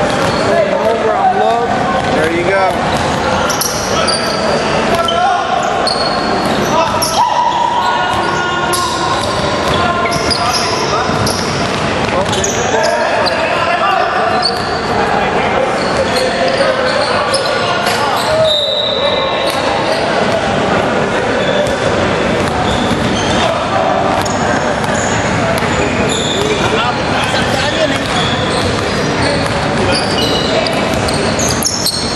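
Basketball being dribbled and bounced on a hardwood gym court, with short high squeaks of sneakers and players' voices calling out, all echoing in a large hall.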